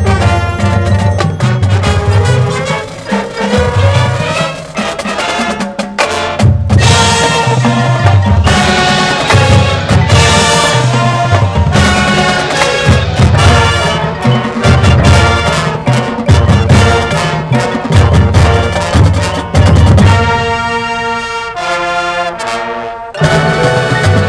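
High school marching band playing loudly: brass with percussion and pulsing low notes. Near the end the band drops to a quieter passage of held tones, then the full band comes back in hard about a second before the end.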